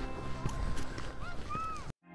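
Open-air ambience on a busy sledding hill: distant children's high shouts and calls over a faint crunch of footsteps in snow. It cuts off abruptly just before the end.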